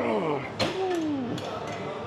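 A man's strained voice falling in pitch as he finishes a set on a pec-fly machine, then a sharp clank about half a second in as the machine's weight stack is let down, with a few lighter knocks after.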